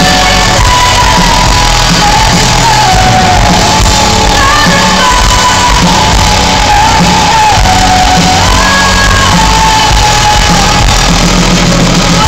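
Symphonic metal band playing live and loud in a concert hall, the female lead singer holding long, gliding sung notes over electric guitars and drums, with shouts from the crowd.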